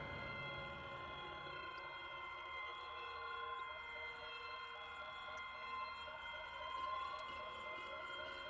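Quiet background music: sustained, drone-like synth tones held steady, with a faint pulse of about three a second in the middle.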